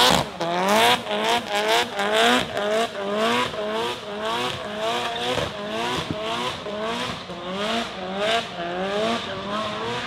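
A car doing donuts in tyre smoke: the spinning tyres squeal and the engine revs in a steady pulsing rhythm, rising in pitch and dropping back about two to three times a second.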